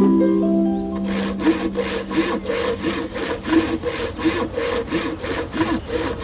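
A short harp-like musical chord dies away in the first second. Then a hand saw cuts through wood in quick, even back-and-forth strokes, a little over three a second.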